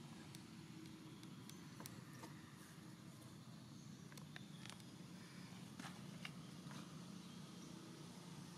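Near silence: faint outdoor background with a low steady hum and a few scattered faint clicks.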